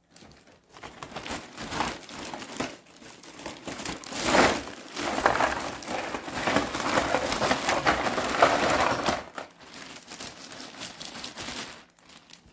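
Plastic carrier bag crinkling as a load of blister-carded Hot Wheels cars is tipped out, the cards sliding and rustling as they pile onto a table. The rustle is busiest from about four to nine seconds in, then tails off.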